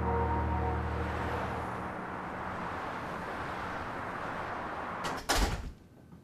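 The last of a soft music cue fading over a steady wash of noise, then about five seconds in a door opening and shutting: a couple of small clicks and a loud clunk.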